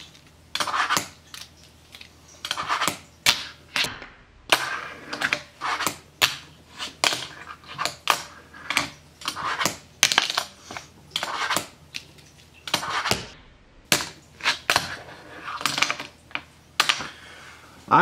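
A fingerboard flicked and landed over and over: irregular sharp clicks and clacks of the board popping and its wheels hitting a fingerboard ledge and tabletop, with short scrapes between them as trick after trick is attempted.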